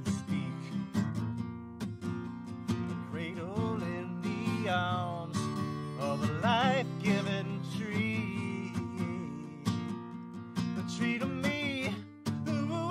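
Steel-string acoustic guitar strummed steadily, with a man's voice singing in a few phrases that slide in pitch.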